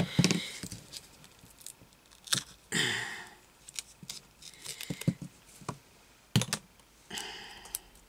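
Scissors snipping through double-sided carpet tape and the fabric stuck to it, with scattered clicks of the blades and short crinkling rustles as the tape strip is handled.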